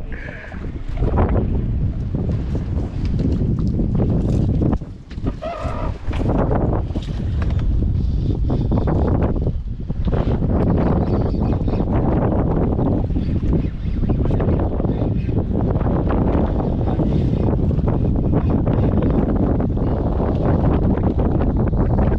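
Wind buffeting an action camera's microphone: a steady, loud rumbling noise that dips briefly about five seconds in.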